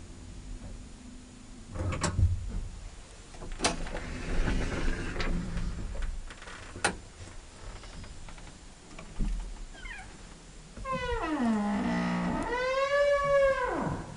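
Several sharp clicks and knocks, then, for the last three seconds or so, a long squeal that slides down in pitch, back up, and down again.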